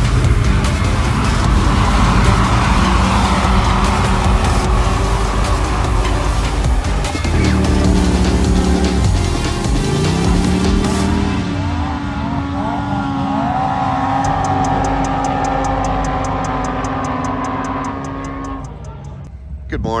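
Side-by-side UTV engines revving and running hard as they drag race on sand, mixed with loud background music. About halfway through an engine's pitch climbs and then falls away.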